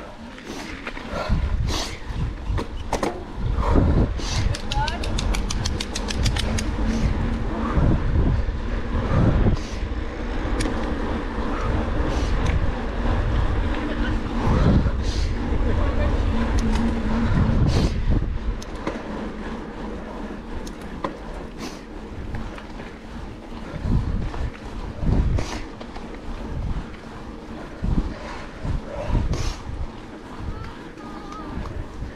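Mountain bike ridden on a paved road, heard from a handlebar camera: steady wind rumble on the microphone and tyre noise, with scattered knocks and clicks. About four seconds in comes a fast, even run of clicks lasting roughly two seconds, the rear hub ratcheting as the rider coasts.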